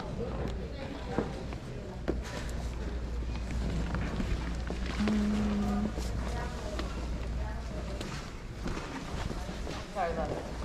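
Background voices of other people in a large hall over a steady low hum, with some music, short rustles and knocks as piles of clothes are handled, and one held note about halfway through.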